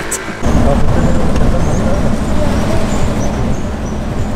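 A moving jeep's engine and road noise, heard while riding on the back of it: a loud, steady low rumble that starts suddenly about half a second in.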